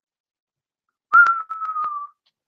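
A person whistling a single held note about a second in, lasting roughly a second and sagging slightly in pitch, with a few sharp clicks over it.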